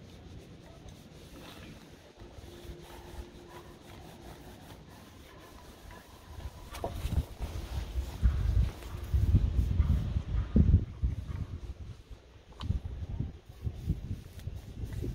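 Faint paintbrush strokes on a wooden stool. About halfway through, loud, irregular low rumbling starts and comes and goes in gusts, like wind buffeting the microphone.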